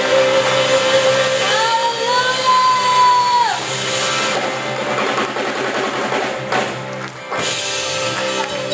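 Live worship band playing in a large hall, with drums and sustained chords. About one and a half seconds in, a high note slides up, is held for about two seconds, then drops away.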